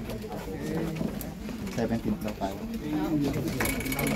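Indistinct talk of several people at once, low voices overlapping in a crowded room.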